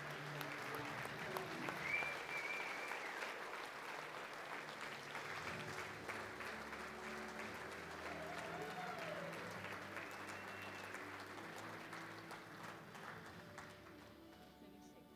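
Audience applauding steadily, the clapping gradually dying away near the end.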